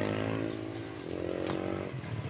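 A motorcycle engine running and slowly rising in pitch, fading away within the first second.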